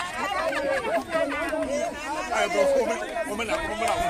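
Crowd of people talking at once outdoors: many overlapping voices in steady chatter.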